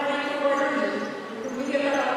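A woman speaking Arabic into a podium microphone, delivering a formal address.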